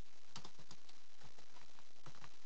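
Computer keyboard typing: a few scattered key clicks over a steady background hiss.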